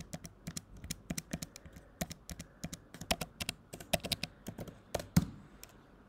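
Typing on a computer keyboard: a run of irregular, quick keystrokes, with one louder key strike about five seconds in.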